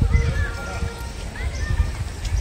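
Wind rumbling on the microphone, with short, scattered bird chirps over it.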